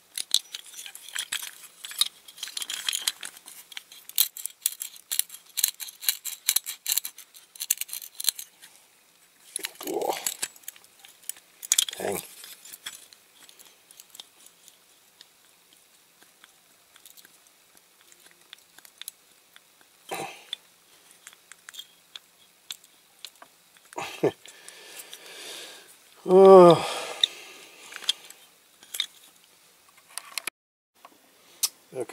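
Rapid clicking and scraping of small diecast metal parts worked by hand, as the roller on its jammed axle is pried at, for about the first eight seconds. Then scattered handling clicks and a few short hummed 'mmm' sounds, the loudest and longest near the end.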